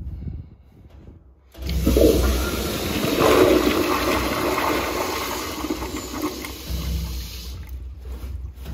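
A 1930s Standard Monaco vented side-spud toilet flushed by its flushometer valve. About a second and a half in, water rushes into the bowl with a strong power flush that swirls and drains, easing off near the end.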